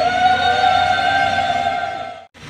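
A single high note held steadily for about two seconds, with a slight upward bend as it begins and a fade near the end: a sustained musical tone from a wind instrument or voice.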